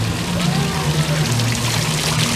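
Tiered fountain splashing steadily, with water spilling from its bowls into the basin below.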